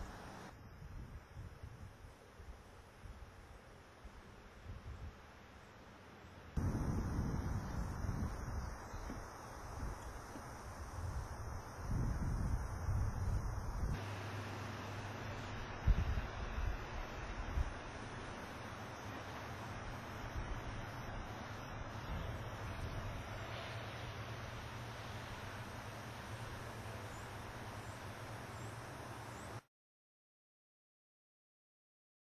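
Outdoor ambience with wind rumbling on the microphone, its level jumping at cuts in the footage, and a single sharp knock about halfway through.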